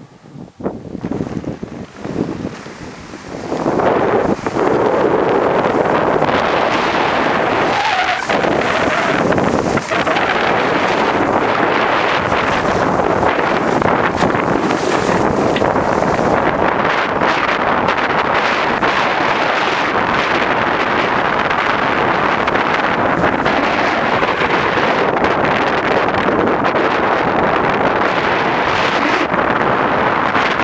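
Skis running over groomed snow with wind rushing across the microphone during a downhill ski run, a steady loud rush that builds in about four seconds in. Before that, a few short knocks and scuffs as the skier gets moving.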